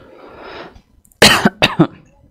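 A man coughing twice in quick succession, the two coughs loud and short, after a soft breath in.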